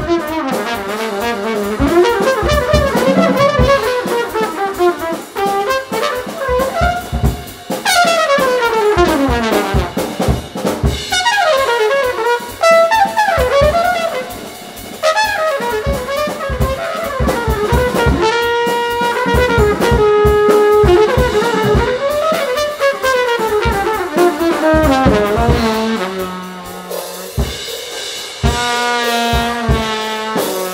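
Improvised jazz on trumpet with a drum kit: the trumpet plays long runs that swoop up and down in pitch, including long falling glides, over steady drum and cymbal strikes, settling into lower held notes near the end.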